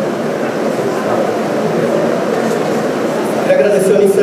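Audience chatter in a large hall: many voices talking at once in a steady murmur, with one voice standing out near the end.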